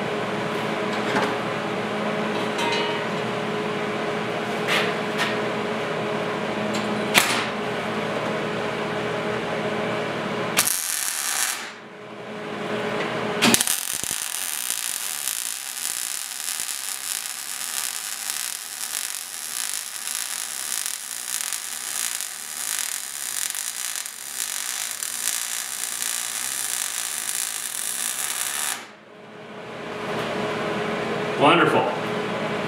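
MIG welder arc crackling as a weld bead is laid on steel checker plate: a short burst about 11 seconds in, another brief one a couple of seconds later, then a continuous weld of about fifteen seconds that stops shortly before the end. Before the welding there is a steady hum with a few sharp clicks.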